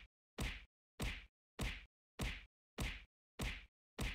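A whack sound effect repeated seven times at an even pace, about one hit every 0.6 seconds, each hit identical and cut off to dead silence before the next.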